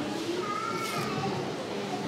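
Indistinct murmur of voices in a church, with a child's voice rising and falling among them.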